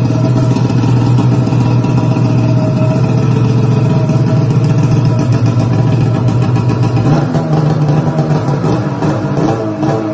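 Polaris snowmobile engine with an aftermarket exhaust can, running loud and steady. About seven seconds in, its note shifts and wavers up and down.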